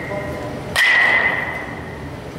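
A metal baseball bat hitting a pitched ball about a second in: a sharp crack followed by a ringing ping that fades over about a second.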